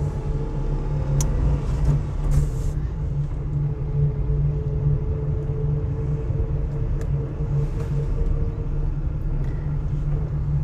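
Car driving at a steady, slow speed, heard from inside the cabin: a steady low rumble of engine and tyres on tarmac with a faint steady hum, and a few light clicks.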